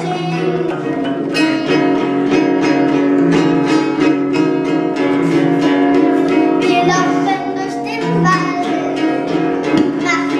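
Acoustic guitar strummed steadily in an amateur children's performance, with a child's singing voice coming in now and then.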